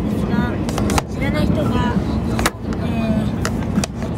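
Steady low rumble of a limited express train running, heard inside the passenger cabin, with several sharp plastic clicks as a seat-back tray table is handled.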